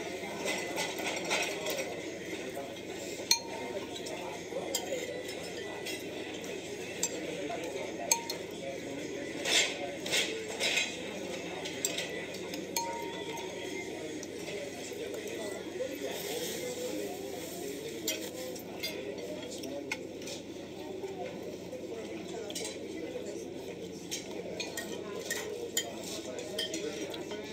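Cutlery and dishes clinking at a meal table, with scattered sharp clinks, a few louder ones about a third of the way in and a cluster near the middle, over a steady murmur of restaurant chatter.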